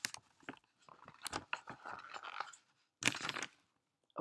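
Paper rustling and crinkling as the pages of a large picture book are handled and turned, with a louder swish about three seconds in.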